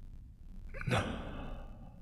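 A person breathing out once, hard and sigh-like, about a second in, trailing off over half a second: an exhale of smoke.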